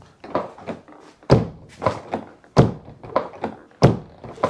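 Abarth 595 door being pushed shut again and again, thudding against its latch without catching. There are three heavy thuds about a second and a quarter apart, with lighter knocks between them. The door will not latch with the newly fitted striker reinforcement tightened down.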